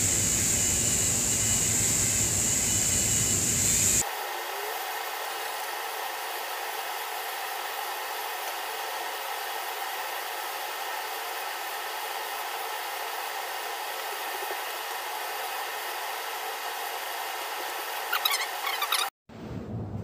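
Dremel-type rotary tool running steadily at a middling speed setting, its fine rubberized abrasive bit polishing carbon buildup off an aluminium cylinder head's combustion chambers. A high whine for the first few seconds changes abruptly to a thinner, quieter steady hum about four seconds in, then cuts off just before the end.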